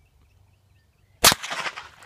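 A single AR-15 rifle shot, one sharp crack a little over a second in that trails off over about half a second.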